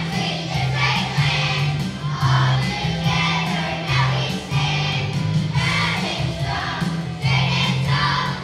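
An elementary school children's choir singing together over an instrumental accompaniment with a moving bass line.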